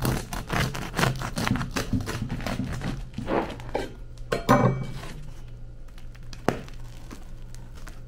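A knife sawing through the crisp crust of a homemade sourdough loaf, a dense run of crackling, then louder crunches as the loaf is pulled apart, and a single sharp knock later on.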